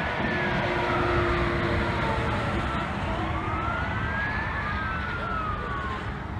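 An emergency vehicle siren wailing, its pitch slowly rising and falling, over a steady low rumble.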